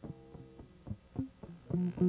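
Guitar and bass music: sparse plucked notes, then a louder, evenly repeating pattern of notes starting near the end.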